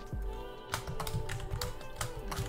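Computer keyboard typing: a quick, irregular run of key clicks as a word is typed, over steady background music.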